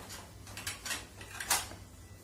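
Wooden spatula scraping and knocking against a dark nonstick kadai while stirring thick besan curry: a few short scrapes, the loudest about one and a half seconds in.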